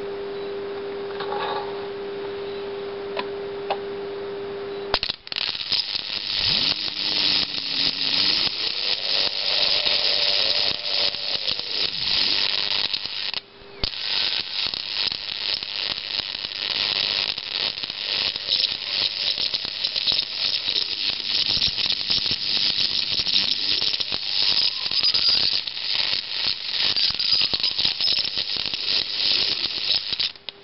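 A flyback transformer's high-voltage output whines with a steady tone, then from about five seconds in arcs continuously from its brass ball terminal, a dense high-pitched crackling hiss. The arc drops out briefly near the middle and stops right at the end, when the steady whine returns.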